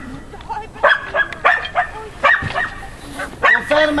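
Search-and-rescue dog barking repeatedly at a hidden person, about one bark every half second to a second. This is its bark indication, confirming the find.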